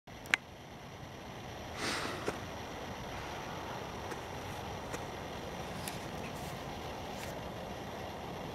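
Steady low outdoor background rush, with a sharp click near the start, a brief louder rustle about two seconds in and a few faint ticks from the handheld camera being moved.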